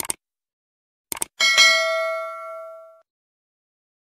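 Subscribe-button animation sound effect: a mouse click, then two quick clicks about a second in, followed by a bright notification-bell ding that rings on and fades away over about a second and a half.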